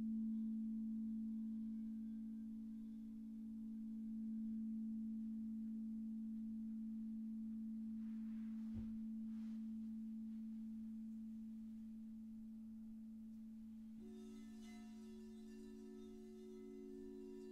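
Frosted quartz crystal singing bowls ringing with a steady low tone that slowly swells and fades. There is a brief soft knock about nine seconds in, and a higher bowl tone joins near the end.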